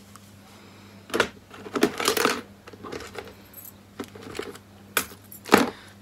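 Small hard makeup items being handled, clicking and clinking against one another in a few sharp bursts: about a second in, around two seconds in, and twice near the end.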